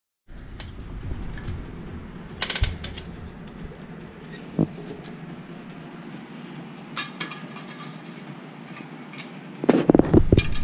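A small dog scrabbling about on a tile floor, its claws giving scattered clicks and scuffs over a steady background hum, with a louder flurry of knocks and scuffles near the end.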